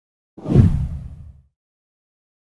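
A whoosh transition sound effect with a deep low rumble. It swells in suddenly about half a second in and fades away by a second and a half.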